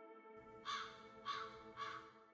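A crow cawing three times, a little over half a second apart, over a steady ambient music drone.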